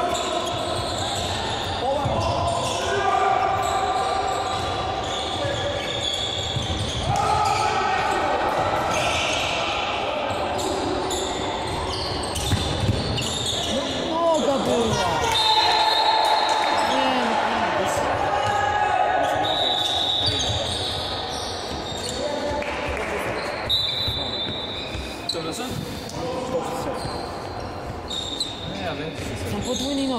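Handball match in a sports hall: the ball bouncing on the court floor amid players' and onlookers' shouts, all echoing in the large hall.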